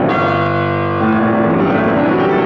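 Grand piano played: a loud full chord struck at the start and left ringing with a bell-like resonance, then a new chord in the bass about a second in.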